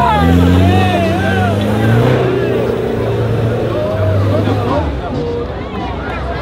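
Nissan Patrol 4x4 engine working hard under load as it climbs a soft sand trench: revs climb at the start, hold with small surges, then drop away about five seconds in. Spectators' chatter runs over it.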